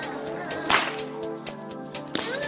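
A loud, sharp crack like a whip about three-quarters of a second in, with a few smaller snaps around it, over background music.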